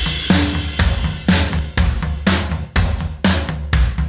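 Sampled drum kit from the Addictive Drums 2 software instrument playing a steady beat, with kick, snare, hi-hat and cymbal hits about twice a second. The kit pieces are being swapped for other samples while the beat plays.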